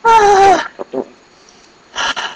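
A person's high-pitched, drawn-out squealing laugh that falls slightly in pitch, followed by two short laughs, with another burst of laughter at the very end.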